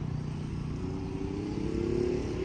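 A motor vehicle's engine running under a steady low rumble. From about a second in, its hum rises slowly in pitch.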